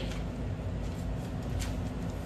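Quiet room tone: a steady low hum with a couple of faint light ticks.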